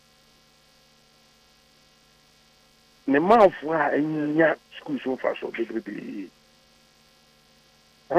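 Faint steady electrical hum fills two pauses, and a man speaks for about three seconds in the middle. His voice is cut off above the upper treble, as over a phone line.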